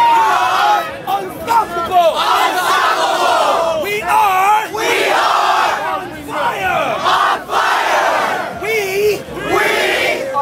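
A crowd of many voices shouting and yelling at once, with several loud single yells close by standing out above the rest.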